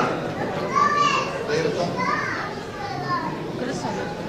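Children's voices talking, with no clear words.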